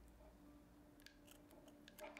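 Small scissors faintly snipping through twine: a few quiet clicks of the blades closing, about a second in and again near the end.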